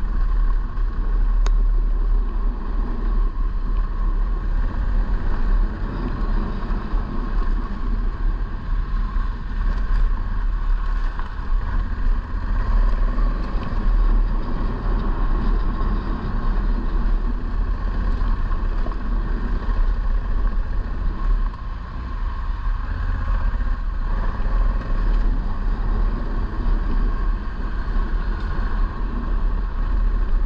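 A motorcycle ridden at a steady pace on a gravel road: the engine runs without let-up under a deep, continuous rumble of road noise, dipping slightly about two-thirds of the way in.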